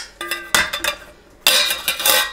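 Stainless steel grease-strainer pot parts clinking and scraping as the metal strainer is handled and fitted into the pot: a couple of short metal clinks in the first half second, then a louder scraping rattle near the end.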